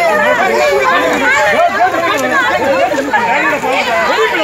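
A crowd of people shouting and wailing over one another, with women's voices crying out high and strained.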